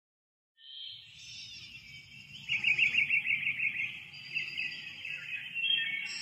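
Birds singing, high chirps with a rapid trill about two and a half seconds in, over a faint low background rumble.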